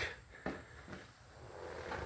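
Mostly quiet, with a single faint click about half a second in.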